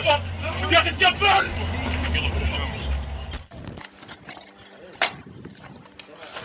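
Men's voices, heard unclearly, over a steady low rumble; the sound cuts off about three and a half seconds in. What follows is quieter scattered clicking, with one sharp knock about five seconds in.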